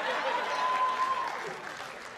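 Live audience applause that dies away after about a second and a half.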